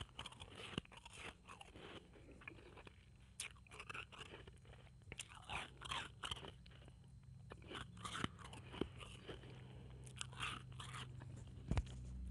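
Blended ice being chewed and crunched in the mouth, picked up close on an earphone microphone. It comes as irregular crunching bursts every second or so, with a sharp click near the end.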